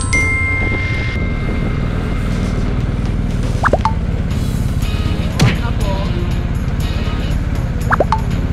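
BMW GS adventure motorcycle engine idling steadily under background music, with edited-in cartoon-style sound effects: a chime at the very start, then quick swooping whistles with pops about three and a half, five and a half and eight seconds in.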